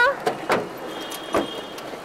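Car sounds: two short knocks, about half a second and a second and a half in, with a faint steady high tone between them.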